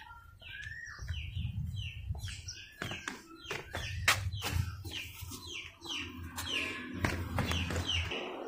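Birds chirping, many short calls one after another, over a low rumble with a few sharp clicks.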